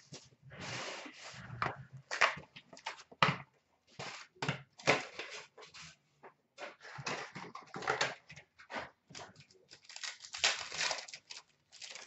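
A cardboard box of trading-card packs being opened and the foil-wrapped packs handled: an irregular run of rustles, crinkles and small clicks.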